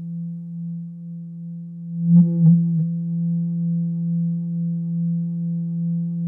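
Corsynth VC LFO running at audio rate in its high-speed mode, its sine-wave output patched through a filter, sounding one steady low tone with faint overtones. A short cluster of clicks comes about two seconds in.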